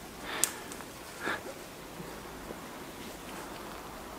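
Footsteps rustling and crunching through dry leaf litter and dead twigs on a forest floor. There are two slightly louder rustles, about half a second and just over a second in.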